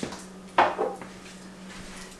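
A salt shaker being picked up off a kitchen counter: a light click at the start, then a louder clink and knock about half a second in.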